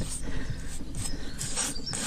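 Pointing tool scraping along fresh lime mortar joints in brickwork: a few short scraping strokes, about a second apart.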